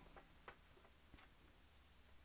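Near silence with a few faint ticks from a sheet of thin printed paper being handled as it is laid over into a corner-to-corner diagonal fold; the clearest tick comes about half a second in.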